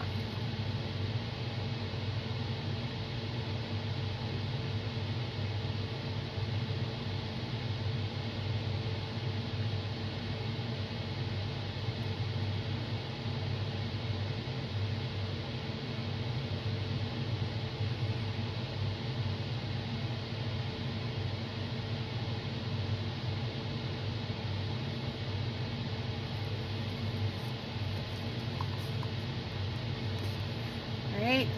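A steady low hum with an even hiss, like a fan or other running room equipment, holding the same level throughout with no distinct knocks or clicks.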